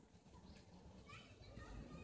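Faint, distant children's voices at play, barely above near silence, with a low rumble that grows toward the end.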